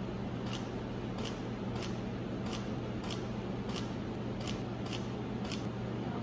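Camera shutter firing again and again during a photo shoot: about nine short, sharp clicks, one every half second to second, over a steady low room hum.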